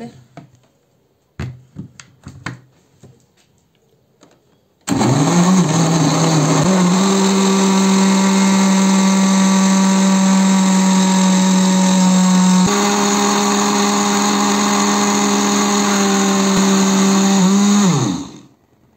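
Glass-jar countertop blender puréeing tomatoes, serrano chiles, onion and garlic with water. A few handling knocks as the jar goes onto the base, then about five seconds in the motor starts, quickly comes up to speed and runs loud and steady for about thirteen seconds, winding down right at the end.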